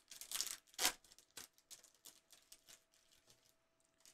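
Faint handling sounds of trading cards and their wrapping in gloved hands: a few short rustles and taps in the first second, the loudest just under a second in, then a few faint ticks over a faint steady hum.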